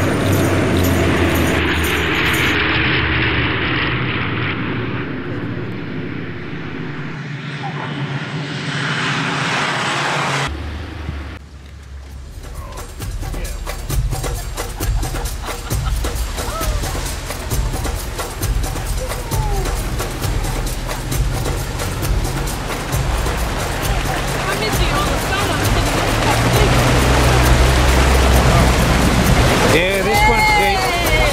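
A single-engine light aircraft's propeller engine as the plane comes in low to land. Then, after a sudden change, a safari vehicle's engine runs with the body rattling over rough track, louder near the end as it ploughs through water.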